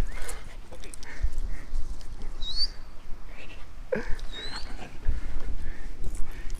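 A dog whimpering now and then, with two short high-pitched squeaks about two seconds apart.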